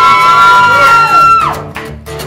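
Live acoustic performance: high held whoops, two pitches at once, swing up, hold and drop away about a second and a half in, with acoustic guitar under them. A few sharp guitar strums follow near the end.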